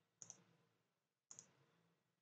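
Faint computer mouse clicks: two quick pairs of clicks, about a second apart.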